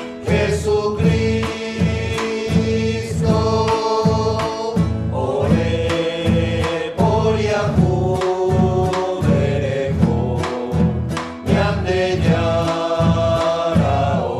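Small mixed choir of men's voices and one woman's voice singing a penitential hymn, with acoustic guitar strumming and a drum keeping a steady beat.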